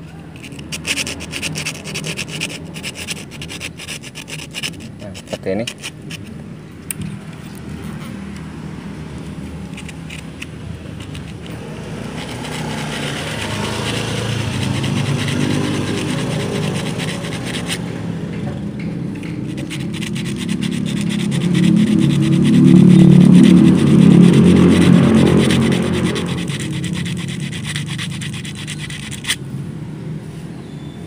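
Coarse sandpaper rubbed back and forth by hand over the metal thread guides of a sewing machine's upper tension assembly, a rapid scratching. This smooths the rough thread path that makes the upper thread twist and break. From about twelve seconds in, a droning engine sound, likely a passing motor vehicle, swells to be the loudest thing a little past twenty seconds, then fades.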